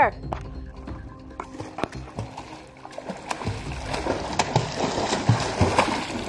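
Pool water splashing and lapping with many small splashes, growing busier and louder over the last couple of seconds as a swimmer surfaces. Faint background music runs underneath.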